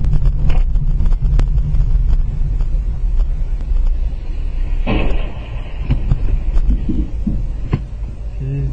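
Steady low rumble of a moving car picked up by its dashcam, with a few sharp clicks and a short burst of hissing noise about five seconds in.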